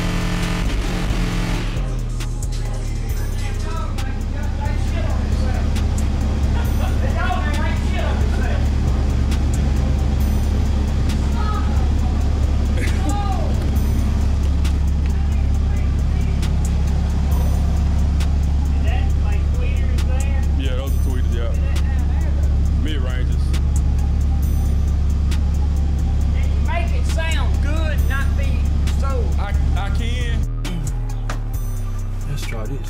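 Ford 302 (5.0) V8 idling steadily with a low exhaust rumble, starting about two seconds in, with voices and music over it.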